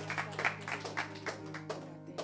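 Hands clapping in a steady rhythm, about four claps a second, over background music holding a low sustained note.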